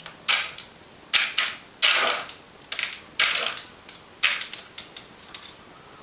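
A small dog crunching dry kibble from a plastic bowl: about ten sharp, irregular crunches.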